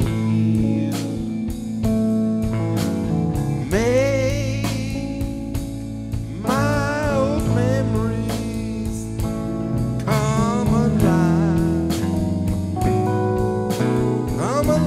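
A live band playing a slow country-style ballad: an electric lead guitar bends and holds long notes with vibrato, phrase by phrase, over drums, cymbals and sustained keyboard chords.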